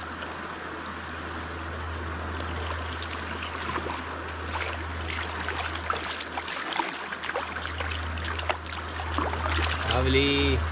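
Steady rush of shallow river water flowing past, with scattered small ticks and splashes.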